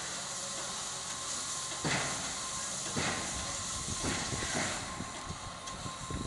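Steam locomotive standing on a turning turntable, its steam hissing steadily, with a faint steady whine and sharp knocks about once a second, coming more often near the end.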